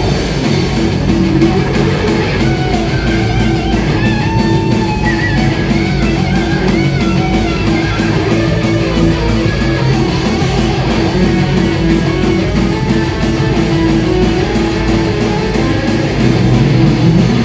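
Heavy metal band playing live: distorted electric guitars over fast, dense drumming, with a melodic guitar line above a held low note.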